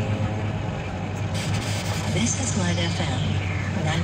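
Steady low drone of a car's engine and road noise, heard from inside the moving taxi's cabin, with voices talking over it.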